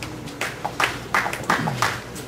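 Scattered hand claps from a few audience members, about six separate claps roughly three a second, after the song is announced.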